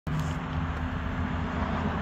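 Steady low mechanical hum with several held low tones.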